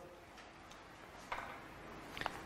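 Quiet room tone with a few faint clicks of handling, the clearest one a little past the middle.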